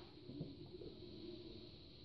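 Near silence: faint room tone, with one brief faint tick about half a second in.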